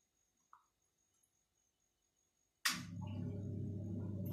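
Near silence with a faint tick, then about two and a half seconds in, a machine switches on with a sharp click and runs with a steady low hum.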